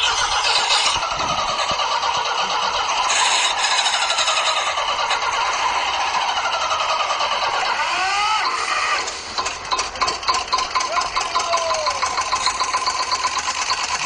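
A small engine running with a rapid, rattly beat under heavy rushing noise. A few short rising cries come a little past halfway.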